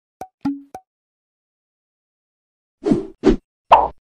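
Short cartoon pop sound effects: three light pops in the first second, one trailing a brief low tone, then three louder pops close together near the end.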